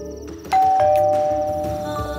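Electric doorbell chime ringing a ding-dong as the switch is pressed: a higher note about half a second in, then a lower one, both ringing out and slowly fading.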